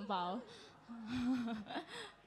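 Speech only: a voice saying two short phrases, one at the start and one about a second in.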